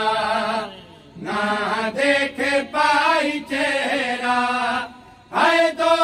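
Male voices chanting a noha, a Shia lament, in long drawn-out melodic phrases. The chant breaks briefly about a second in and again near five seconds.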